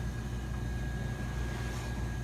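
Steady low machine hum with a thin, faint high whine over it, from running refrigeration equipment at a commercial kitchen cooler.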